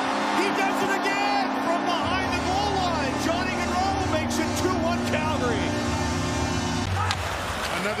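NHL arena goal horn sounding over a cheering crowd for a home-team goal, with the goal song's music coming in about two seconds in; the horn stops near the end.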